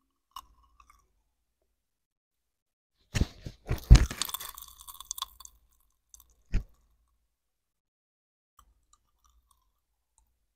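Close-up chewing and crunching of candy in the mouth: a dense burst of crackly crunches about three seconds in, lasting about two seconds, then a single sharp click a second later, with near silence around them.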